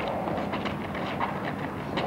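Quick, irregular scuffing and tapping of sparring boxers' trainers on tarmac as they move around each other, with a steady low hum underneath.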